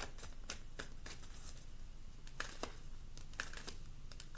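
Faint, irregular small clicks and light taps, about half a dozen, over a low steady room hum.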